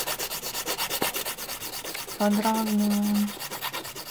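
Hand nail file rubbing back and forth across the free edge of a gel-coated fingernail, in fast, even strokes. About two seconds in, a steady tone sounds over the filing for about a second.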